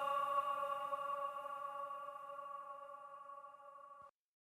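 The closing held synth chord of an electronic dance track, steady in pitch with no beat under it, fading away.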